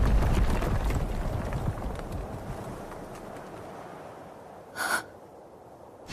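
The deep rumble of a huge explosion dying away steadily over several seconds. A short gasp comes near the end.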